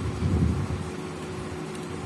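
Steady background hum and noise, with a low rumble in the first half second.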